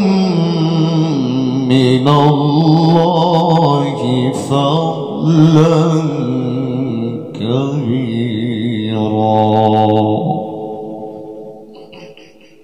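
A male qari recites the Quran in the melodic, ornamented style, his amplified voice winding through runs and sustained notes. Near the end he holds one long, steady note that stops about ten seconds in, and the sound dies away over the next two seconds.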